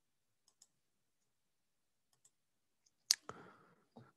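Computer mouse clicks. There are faint pairs of clicks about half a second and about two seconds in, then a louder single click about three seconds in, followed by a short faint noise.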